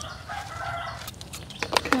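A rooster crowing once, a fairly steady call of under a second, followed by a few light clicks.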